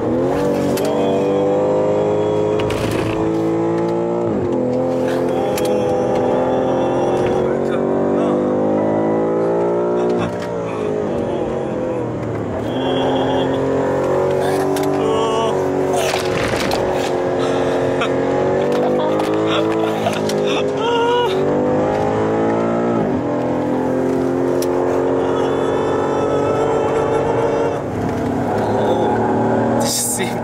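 BMW M5's twin-turbo V8 heard from inside the cabin on a fast lap of a race circuit, revving up hard and dropping back under braking several times. A passenger's voice cries out over it now and then.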